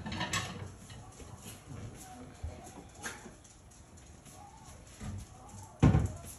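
Faint scattered knocks and shuffles of kitchen handling, with one loud, short thump a little before the end.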